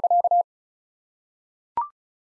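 Machine-sent Morse code at 35 words per minute: a steady tone of about 700 Hz keyed in quick dits and dahs, stopping about half a second in. After a pause, near the end, comes a short two-note rising beep, the courtesy tone that marks the end of a sentence.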